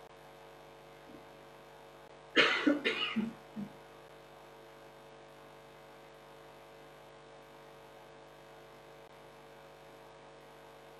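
A person coughs in a short run of several coughs about two and a half seconds in, over a steady faint electrical hum.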